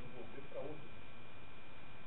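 Faint, distant voice of an audience member answering off-microphone, over a steady hiss and a thin, steady high tone.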